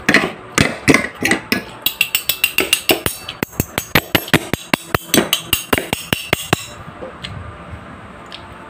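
Forks clinking against a ceramic plate of noodles in a quick run of sharp clicks, several a second, with a ringing edge, stopping about six and a half seconds in.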